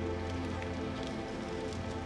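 Soft, sustained keyboard chords that hold steady, with faint rustling and a few light clicks scattered through.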